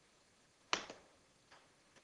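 A golf wedge striking the ball on a short mid-range shot: one crisp, sharp click about three quarters of a second in that dies away quickly, followed by a much fainter tap a little under a second later.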